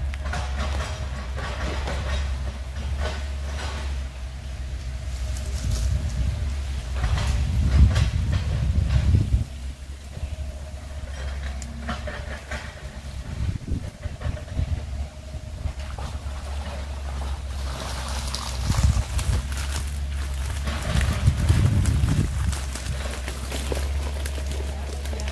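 Fishing gear being handled: rustling and knocking of a mesh keep net and bags. It comes in louder spells about a third of the way in and again near the end, over a steady low rumble.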